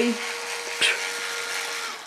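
Small cordless drill-driver motor running at a steady pitch, then cutting off near the end, with one brief sharp high sound about a second in.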